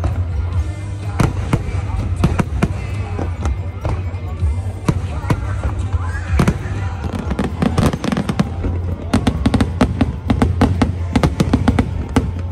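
Aerial fireworks shells bursting in a public display: repeated bangs and crackles, coming thick and fast in the last few seconds, with crowd voices and music underneath.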